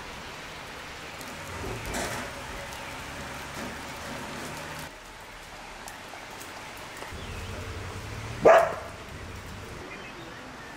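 Steady rain falling, with a dog barking once, loudly, about eight and a half seconds in; a fainter bark-like sound comes about two seconds in.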